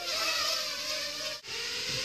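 Holy Stone HS170 mini quadcopter's small electric motors and propellers whining steadily. The sound cuts out for an instant near the end and comes back slightly lower in pitch.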